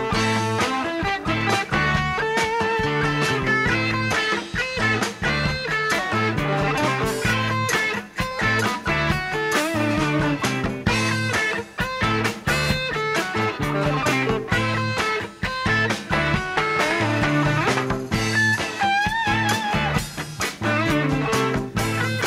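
Live Latin-rock band playing, with an electric guitar playing a lead line over bass and percussion. Near the end one note is held with a wide vibrato.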